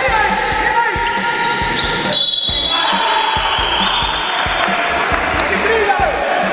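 Basketball game sounds: a ball bouncing and players' voices, mixed with funky electronic background music.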